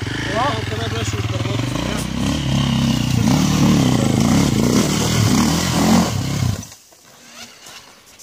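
Dirt bike engine revving up and down repeatedly as the bike climbs a loose, rocky slope, cutting off abruptly near the end.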